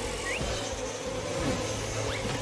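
A steady buzzing drone over a hiss of noise, with a brief rising whistle about a third of a second in, in a cartoon soundtrack.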